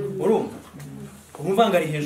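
A man's voice making two short wordless vocal sounds with gliding pitch, one just after the start and one about one and a half seconds in.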